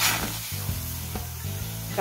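Raw chicken breast sizzling in a hot frying pan over a gas flame, the sizzle starting suddenly as the meat goes down.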